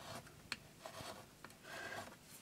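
Craft knife blade drawn through card along a plastic ruler on a cutting mat: faint scraping strokes, with a small click about half a second in.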